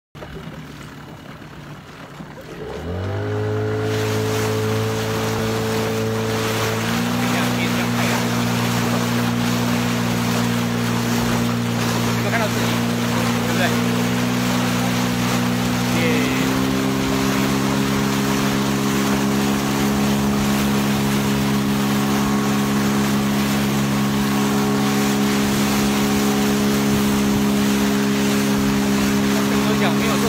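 Outboard motor on an inflatable boat coming up to speed about three seconds in, then running steadily at high revs, its pitch stepping up twice along the way. Wind and rushing water run under the engine.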